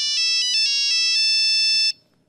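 Mobile phone ringtone playing a melody of stepped electronic notes, cut off sharply just before the end as the call is answered.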